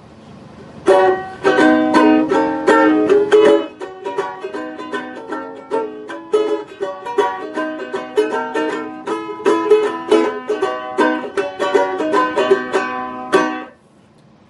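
Handmade gourd-bodied banjolele (baritone-scale, with a flat canteen gourd body and a skin head) strung with Aquila standard high-G ukulele strings, so it is tuned like a regular uke. It is strummed in a bright run of chords and single notes that starts about a second in and stops just before the end.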